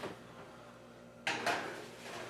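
A sudden metallic clunk and short rattle from an electric range's oven about a second in, as the door is opened and a baking sheet of flour goes in on the rack.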